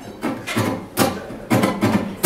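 Acoustic guitar played in short, separate strums about twice a second, the sparse opening strokes of a song before full strumming sets in.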